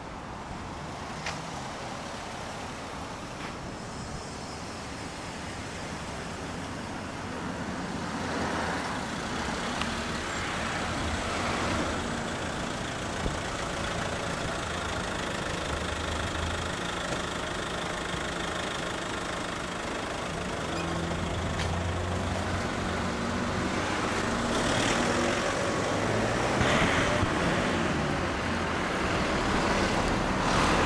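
Honda CBR1000RR's inline-four engine idling steadily through a Moriwaki aftermarket exhaust. The sound swells louder twice, about a third of the way in and again near the end.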